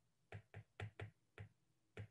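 Faint taps and clicks of a stylus on a tablet screen during handwriting: about six short taps spread over two seconds.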